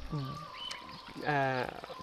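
A man's voice hesitating mid-sentence: a brief vocal sound just after the start and a longer drawn-out vowel in the second half, with a faint steady high tone beneath.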